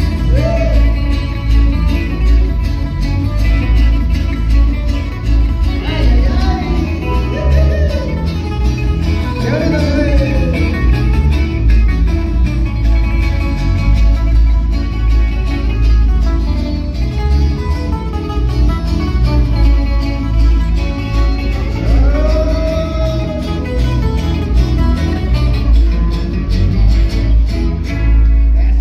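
Loud dance music with plucked guitars over a steady, heavy bass beat.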